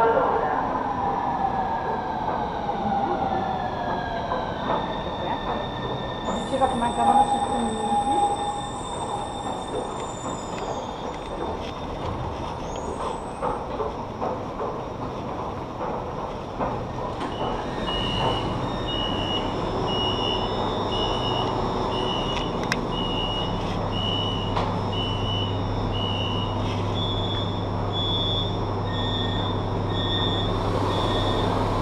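Brescia Metro train pulling into the underground station: its electric motor whine falls in pitch as it brakes, with a brief high squeal. From about halfway in, a beep repeats a little over once a second for several seconds, then holds as a steady tone, over the low hum of the train.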